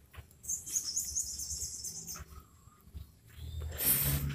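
Birds chirping, a high-pitched twittering from about half a second in until about two seconds in.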